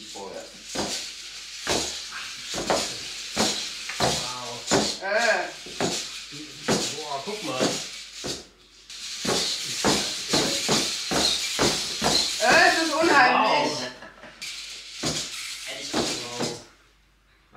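Voices talking and exclaiming while a 3D-printed hexapod robot walks on a wooden floor. Under the voices come the whir of its standard-size servos and short taps of its feet.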